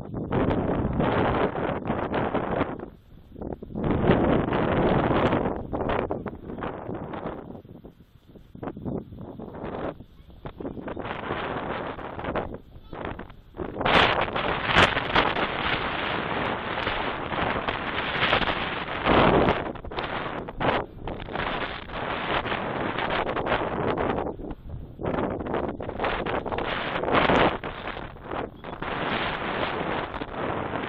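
Wind buffeting an outdoor microphone, rising and falling in gusts with brief lulls.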